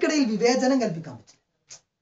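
Speech: a voice talking for just over a second, then a short pause.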